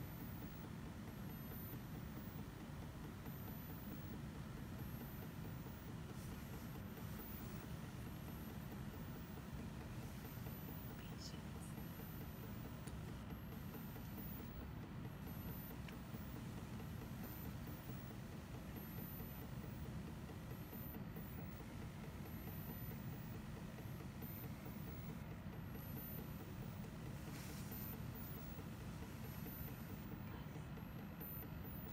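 Syringe pump motor running steadily as it pushes fluid into a microfluidic chip: a low, even hum with a faint steady whine above it.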